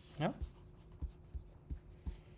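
A man's short questioning "Ja?" with rising pitch, then a quiet pause holding a faint steady room hum and a few soft, low knocks.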